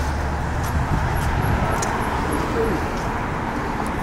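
Street traffic: a car driving past on the road, a steady rushing noise with low rumble.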